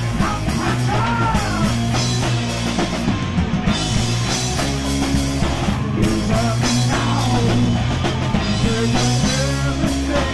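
Live stoner/punk rock band playing loud: guitars, bass and drum kit, with a sung vocal line that bends in pitch about a second in and again near the end.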